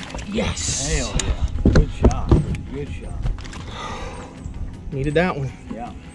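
A hooked largemouth bass is swung out of the water into a bass boat. There is a splash as it clears the surface, then a few sharp knocks as it comes down on the deck, with short shouts from the angler.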